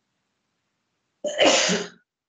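Silence, then a single short, loud cough about a second and a quarter in, lasting under a second.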